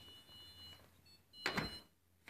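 Faint handling noise of a phone camera being fumbled, with one louder rustle or bump about one and a half seconds in. A faint, steady high whine runs under it.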